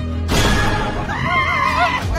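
A sudden noisy burst, then a long, high, wavering cry that sounds like a whinny, over background music.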